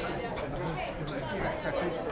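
Crowd chatter: many voices talking at once, none of them clear.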